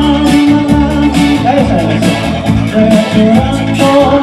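Live band music with a male singer, guitar and a steady beat.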